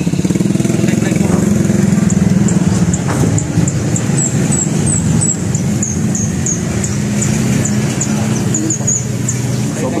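Yamaha motor scooter engine idling steadily. From about four seconds in, a bird chirps repeatedly with short, high notes.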